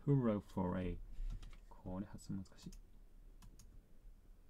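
A short stretch of speech, then a scatter of light computer mouse and keyboard clicks.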